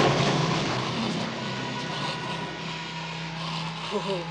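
A steady low mechanical drone with a hiss over it, loudest at the start and slowly fading.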